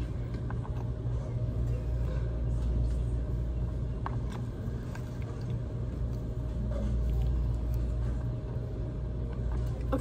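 Steady low rumble of a shop's background noise, with a faint steady hum above it and a faint click about four seconds in.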